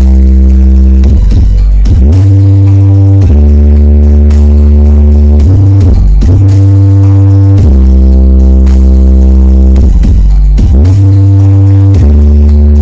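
Very loud bass-heavy music played through the Aeromax carreta, a giant wall of stacked speakers. Deep held bass notes drop and slide back up in pitch several times, and the recording is pinned at its maximum level throughout.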